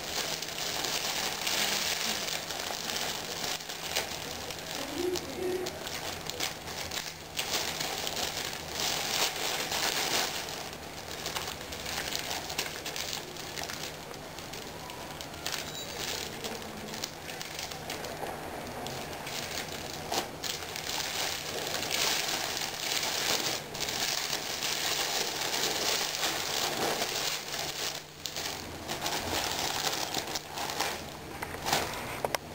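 Clear cellophane wrap crinkling in irregular spells as it is handled, gathered at the top of a gift basket and tied with ribbon.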